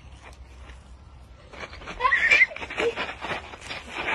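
A loud, high-pitched shriek about two seconds in, followed by choppy bursts of laughter.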